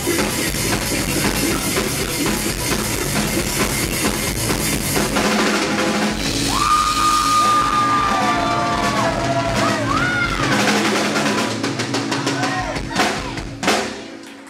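Live rock band (electric guitars, bass and drum kit) playing the closing bars of a song: full band at first, then thinning out after about five seconds into a long held high note with bends over loose drum hits and cymbal crashes, with a couple of big final hits near the end.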